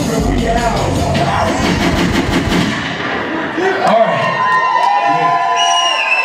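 Hip-hop backing track with heavy bass playing over a live concert sound system, cutting off a little before halfway through. Then the crowd cheers and shouts, with whoops.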